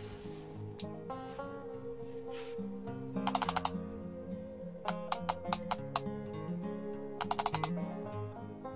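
An arcade push-button used as a Morse key, clicking on each press and release as SOS is keyed. There is a quick cluster of clicks for the three dots, a slower run for the three dashes, and another quick cluster for the last three dots. Soft acoustic-guitar background music plays throughout.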